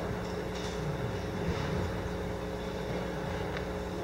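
Room tone of a large hall: a steady low hum and rumble, with faint scattered rustling.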